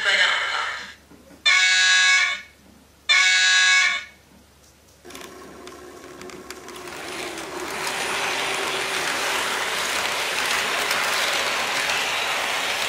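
Two horn blasts of about a second each, a short gap between them, from the Märklin ICE 2 HO model's sound. About five seconds in, the model pulls away, and the rush of its motor and wheels on the track builds up over a few seconds, then holds steady as it runs past.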